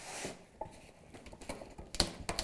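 Fabric being pushed under a lampshade's metal ring with a tucking tool, making faint crackling and small clicks as the ring and its adhesive tape lift away from the PVC panel. A short rustle comes at the start, then scattered crackles. The crackle is the sign that the fabric is going under well.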